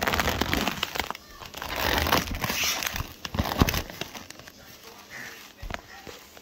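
Plastic wrap on a meat tray crinkling and crackling as a raw steak is pulled free, with many small clicks and rustles. It is busiest in the first four seconds, then dies down to occasional rustles.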